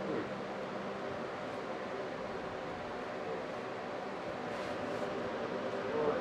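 Steady room tone: a constant even hiss and hum, with no distinct events.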